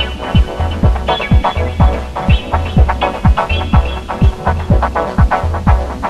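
Dub techno track: a kick drum about twice a second in a steady four-to-the-floor beat, with a deep throbbing bass pulse between the kicks. Repeated chord stabs above them trail off in echoes.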